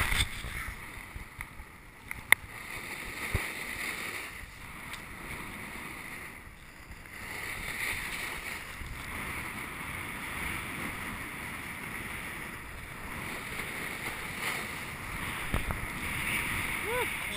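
Snowboard sliding over packed snow: a steady hiss and scrape from the board's base and edges. A single sharp click about two seconds in.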